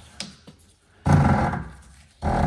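Steel towing eye hook being screwed into the threaded mount behind the front bumper: a short click, then about a second in a longer scraping turn that fades, with the threads going in stiffly.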